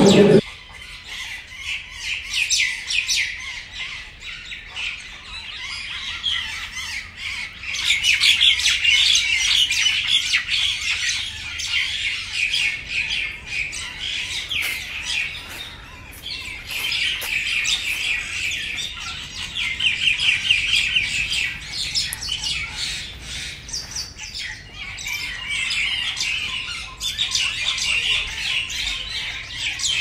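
A flock of birds squawking and chirping in a busy, continuous chatter of rapid calls, swelling louder in several stretches.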